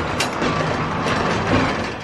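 Metal sliding horse-stall door rolling open along its track, a steady rumble with a click just after it starts.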